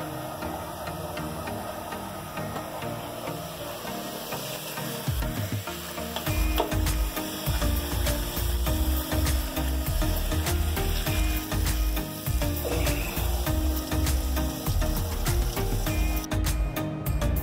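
A steady hiss of running water under background music. A deep, regular beat comes into the music about five or six seconds in.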